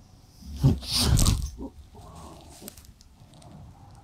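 A loud, rough throat or breathing noise lasting about a second, from a man slumped forward in a fentanyl nod, followed by a few faint rustles.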